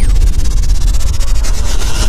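Synthetic intro sound effects: a loud, fast, even crackling rush of noise over a deep steady rumble, opening with a brief falling swish.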